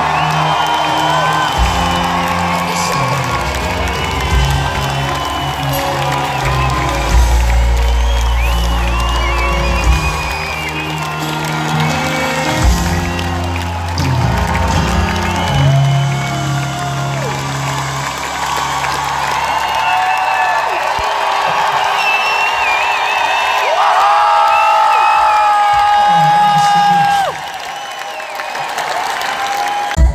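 A live pop-rock band playing in a concert hall, heard from within the crowd, with audience cheering and whoops over the music. About two-thirds of the way through the band's bass drops away, leaving mostly cheering and held voices.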